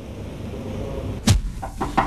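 A loud thump, then a quick series of knocks on a wooden office door, someone knocking to be let in.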